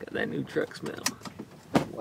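Low voices in a truck cab, with two sharp clicks, about a second in and again near the end.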